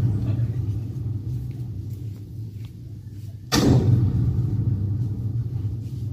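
Cinematic sound design from a tribute video's soundtrack, played over loudspeakers: a deep, steady low rumble, with a sudden booming hit about three and a half seconds in after which the rumble slowly fades.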